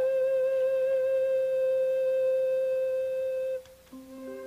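Background film music: one long held note with a slight waver, stopping about three and a half seconds in.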